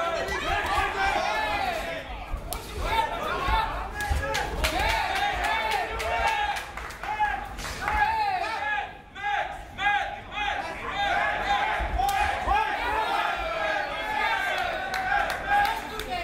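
Many voices shouting over one another, a fight crowd and cornermen yelling at the fighters, with occasional sharp thuds from the bout in the cage.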